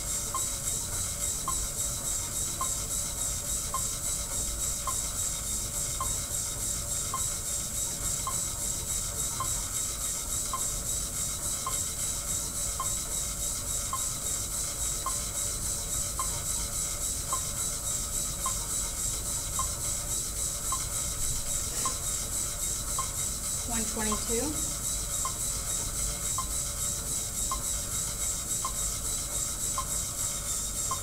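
Monark cycle ergometer running under load as the rider pedals steadily: the friction brake belt rubs on the flywheel in a continuous rasping hiss, with a faint tick about once a second.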